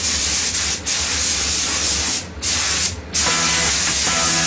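Spray gun spraying finish in long hissing passes, with the trigger let off briefly a few times, over a low steady hum.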